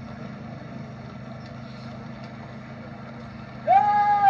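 Steady low hum during a pause in a man's Albanian lament (vajtim). Near the end the lamenter's voice comes back in loud with a long held cry.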